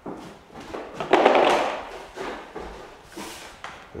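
A Speedskim plastering flattening blade on an extension pole scraping across wet skim plaster on a ceiling. The loudest sweep comes about a second in, with shorter scrapes and knocks of the tool around it.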